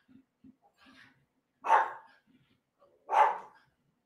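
An old pug barking twice in the background, about a second and a half apart. By the owner's account, he is barking at something none of the other dogs hear.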